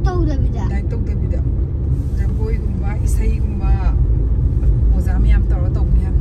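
Steady low rumble of a car on the move, heard from inside the cabin, with voices talking over it in short spells.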